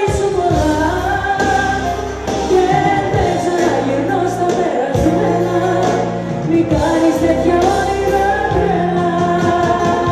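Woman singing live into a handheld microphone over a band accompaniment with a steady beat.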